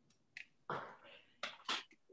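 A voice says 'four' at the end of a count-in, with a short click just before it and two brief sharp sounds after it.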